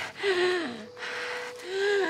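A woman gasping for breath in panic, hyperventilating: two strained, voiced gasps that each fall in pitch.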